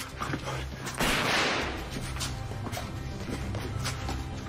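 Tense background music with a steady low drone. About a second in, a sudden loud burst dies away over about a second, which fits a pistol shot echoing in a large room.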